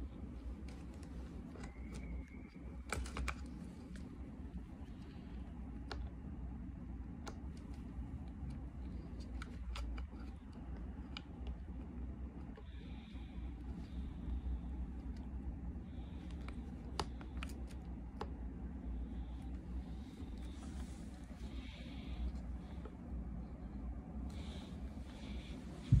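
Irregular light clicks and scrapes of hands working a notched black plastic ring and other parts of a small air compressor during disassembly, over a steady low background hum.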